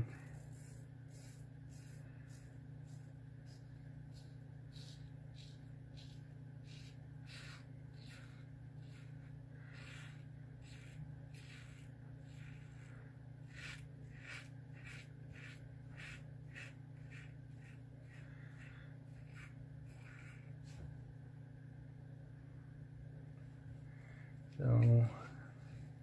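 King C Gillette double-edge safety razor with an Astra blade scraping through lathered stubble in many short, irregularly spaced strokes, an against-the-grain pass. The strokes are faint, over a steady low hum.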